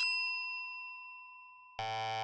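A bell-like ding sound effect, struck just before and ringing on in several clear high tones that slowly fade away. Near the end a short low buzzy tone comes in.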